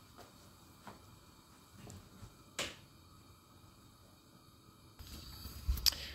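Quiet room tone with a few faint, short clicks, the sharpest about two and a half seconds in. Near the end the background changes and there is a brief low bump.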